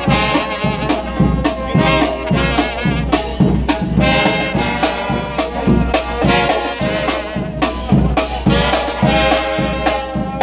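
Mexican brass band playing live: trumpets and trombones carry the melody over a sousaphone bass line and a steady beat of bass drum and snare.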